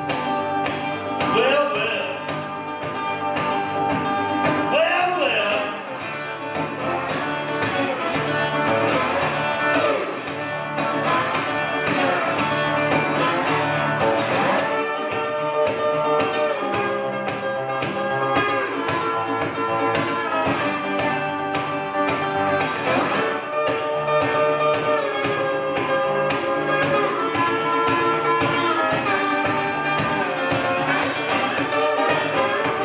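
Metal-bodied resonator guitar played fast and rhythmically as an instrumental break in a folk-blues song.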